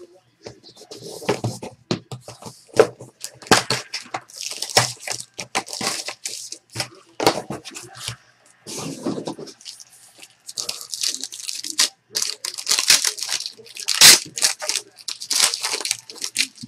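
Sealed trading-card box being opened by hand: plastic wrapping crinkling and tearing, with cardboard and packs rustling and scattered sharp clicks and knocks, the loudest about 14 seconds in.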